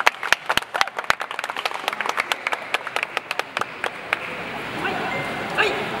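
Scattered applause from a sparse crowd in a large hall, sharp irregular claps for about four seconds that then thin out. Faint voices follow near the end.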